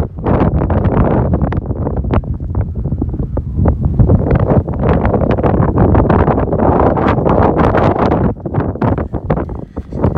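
Strong, gusty wind buffeting the microphone: a loud, rumbling roar of wind noise with irregular gust blasts, easing somewhat near the end.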